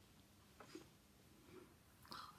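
Near silence: room tone with a couple of faint, brief rustles, about a second in and again near the end.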